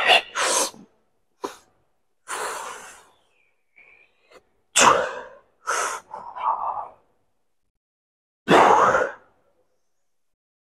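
A man breathing out hard in short, forceful hissy bursts, about six of them at irregular intervals, as he strains through a set of dumbbell lifts on a bench.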